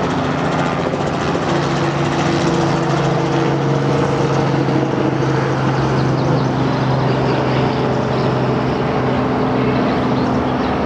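Steady engine drone with a few humming tones that shift slightly in pitch.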